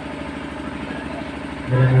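A pause in a man's microphone-amplified speech, filled with steady background noise; his voice comes back in near the end.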